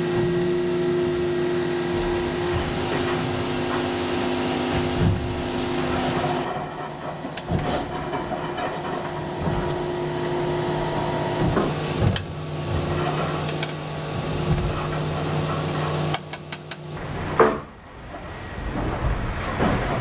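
Steady mechanical hum with a constant pitch inside a racing yacht's cabin, with occasional knocks and a short run of rapid clicks near the end.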